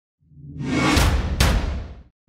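Title-card sound effect: a whoosh with a deep rumble underneath swells up over about a second. A sharp hit comes about one and a half seconds in, and then it fades out.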